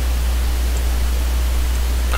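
A steady low electrical hum with an even hiss over it, the recording's own background noise, with nothing else happening.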